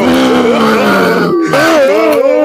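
A low, drawn-out human voice sliding slowly down in pitch, then a higher wavering voice cutting in about one and a half seconds in, with no words.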